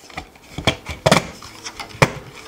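A few light knocks and rubbing clicks as a metal barbell-weight flywheel is seated by hand onto a 3D-printed plastic gear, the loudest knock just after a second in.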